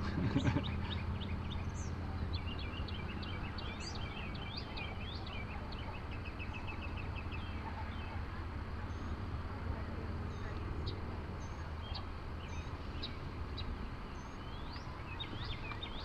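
Small birds chirping and twittering, including a fast trill of evenly repeated notes a few seconds in and scattered short whistles later, over a steady low hum.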